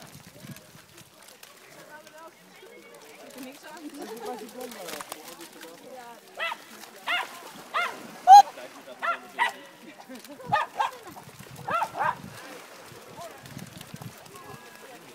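A dog barking repeatedly: about ten short, sharp barks, starting about halfway in, in uneven pairs and singles, the loudest one near the middle.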